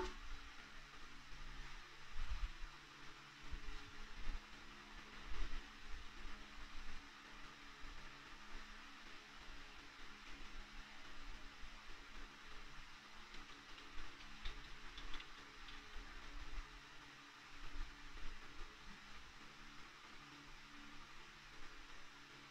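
Faint steady hum and hiss, with a few soft knocks and ticks scattered through.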